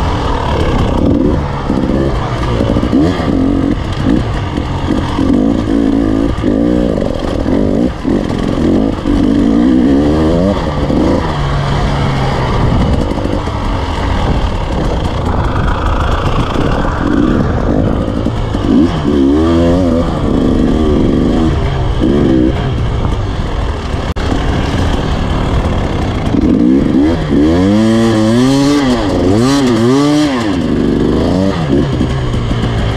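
Enduro motorcycle engine being ridden hard over rough dirt, its revs rising and falling again and again with the throttle and gear changes, loudest near the end, with clatter from the bike over the rocks.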